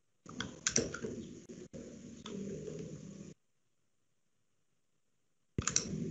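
Irregular clicks and taps like typing on a computer keyboard, heard through a video call. The sound cuts in shortly after the start, drops out after about three seconds, and cuts back in near the end.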